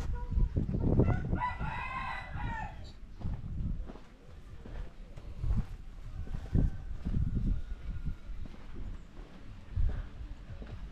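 A rooster crowing once, a single drawn-out call starting about a second and a half in, over low thumps and rumble.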